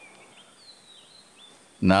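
Faint, scattered short bird chirps over quiet background noise during a pause in speech; a man's voice starts again near the end.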